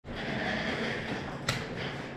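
Rustling and shuffling of a person moving into place close to the microphone, with a single knock about one and a half seconds in.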